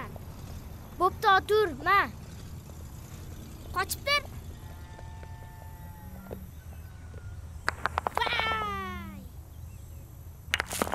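Children's high-pitched shouts and cries, each rising then falling in pitch: a quick run of short calls about a second in, two more around four seconds, and a longer call sliding down in pitch near eight seconds.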